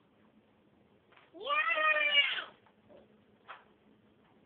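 A single drawn-out, high-pitched whiny vocal cry, about a second long, sliding up at the start and then holding roughly level before fading.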